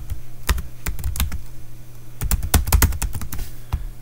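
Typing on a computer keyboard: a few scattered keystrokes, then a quick run of keys about two seconds in, and one last click near the end.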